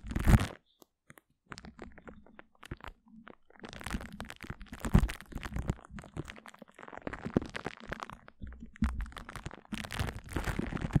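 Glue stick on a microphone, making close, sticky crackles and pops. A loud burst comes right at the start, then a short pause, then denser, irregular crackling from about three and a half seconds in.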